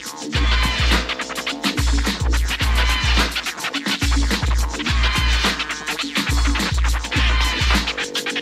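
UK hip hop track in an instrumental break: turntable scratching over a heavy, deep bass drum beat.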